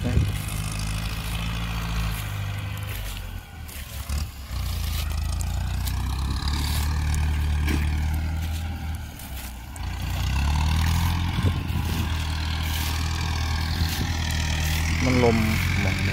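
Ford farm tractor's diesel engine running steadily under load as it pulls a seven-disc plough. A man's voice comes in near the end.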